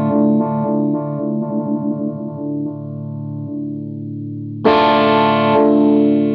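Electric guitar chord ringing through a Poison Noises Lighthouse photo-vibe pedal, its throbbing vibe modulation pulsing and fading away as the chord dies, while the pedal's Decay control, which sets how quickly the modulation wave diminishes, is adjusted. A new chord is struck about three quarters of the way in and rings on, pulsing again.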